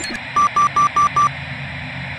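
Handheld communicator giving five short, identical electronic beeps in quick succession over a steady hiss: an error tone for no signal.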